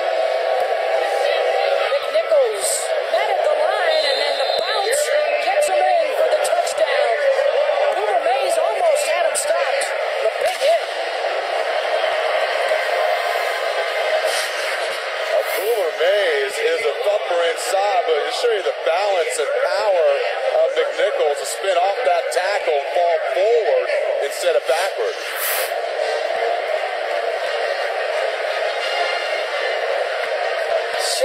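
Football stadium crowd: many voices shouting at once in a steady din, with scattered sharp claps or bangs.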